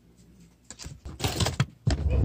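Rustling and clattering close to the microphone, in two loud bursts in the second half.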